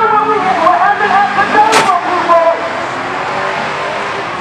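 People's voices talking, with one short, sharp noise a little under two seconds in; the talk thins to a steadier background in the last second or so.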